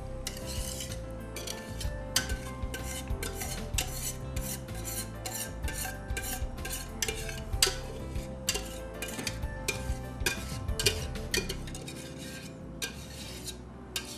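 A metal utensil scraping and clinking against the inside of a stainless steel saucepan in quick, uneven strokes, dozens of them, as thick cooked pudding is scraped out of the pan.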